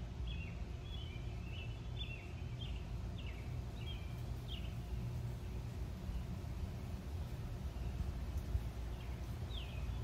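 Small birds chirping in a series of short, falling notes, thickest in the first half and again near the end, over a steady low outdoor background rumble.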